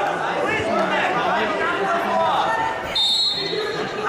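Several voices calling out across a large sports hall, with a short, steady, high-pitched referee's whistle about three seconds in.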